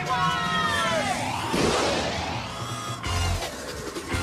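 Cartoon soundtrack of a time machine launching into a time warp, over music. A cry falls in pitch in the first second, a sweeping effect rises through the middle, and deep thumps come near the end.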